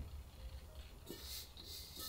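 Faint, soft hiss of rice flour pouring from a bowl onto a layer of crumbled red beans in a bamboo steamer, starting about a second in.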